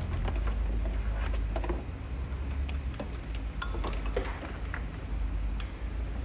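Scattered light clicks and clinks of plastic wiring-harness connectors being handled, over a steady low rumble.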